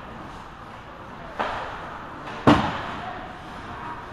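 Two sharp puck impacts in an ice hockey game, about a second apart. The second is louder and rings on in the rink.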